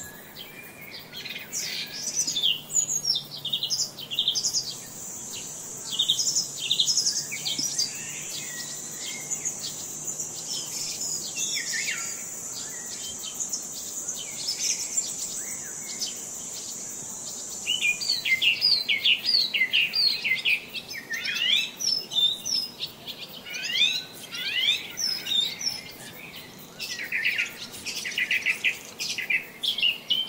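Outdoor birdsong: songbirds chirping and trilling in many short, quick phrases. A steady high-pitched buzz runs underneath from about five seconds in until about eighteen seconds, then stops.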